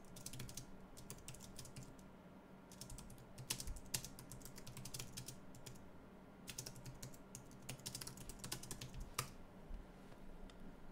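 Faint typing on a computer keyboard: quick runs of keystrokes in three bursts, at the start, around three to four seconds in, and again from the middle to near the end, with pauses between.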